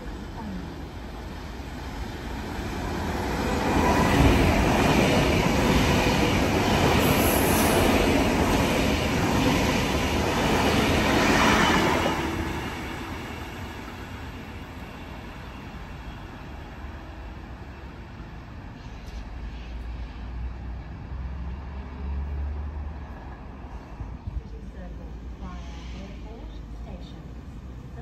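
Sydney Trains K-set double-deck electric train passing, its wheels and motors building up and loud for about eight seconds before the sound drops away suddenly. A quieter steady rumble with a low hum follows.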